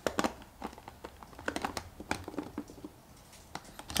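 Scattered light clicks and plastic crinkling as a small vacuum pump is screwed onto the threaded plastic valve of a vacuum storage bag, the bag's film rustling under the hand.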